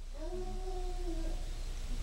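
A faint animal call: one drawn-out, nearly level note lasting about a second and a half, heard over steady background hiss.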